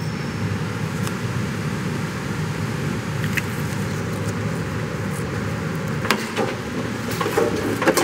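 Steady low background noise of a working auto repair shop, with a few short clicks and knocks near the end.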